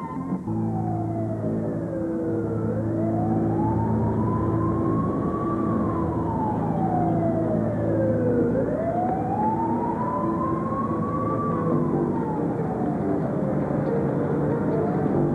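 A siren wailing in a slow rise and fall, each sweep up or down taking about three seconds, over a steady low hum.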